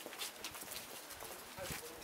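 Faint, irregular clicks or taps over quiet background sound, from an unseen source.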